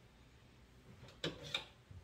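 Quiet kitchen room tone, then two short knocks a little over a second in, as a canning funnel is fetched out of storage.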